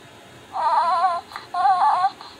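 Hasbro Grogu (The Child) electronic talking plush, squeezed, playing a recorded baby-cooing sound: two short warbling phrases, starting about half a second in.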